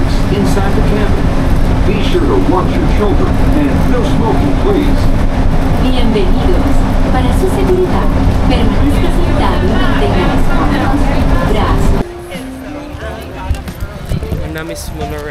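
Interior of a moving shuttle bus: loud running noise with a steady hum, and many passengers' voices chattering over it. About twelve seconds in it cuts off sharply to a much quieter outdoor scene with voices and faint music.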